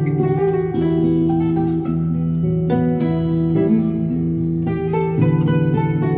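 Guzheng (Chinese zither) played with finger picks: a melody of plucked, ringing notes over sustained low notes, some notes bending in pitch.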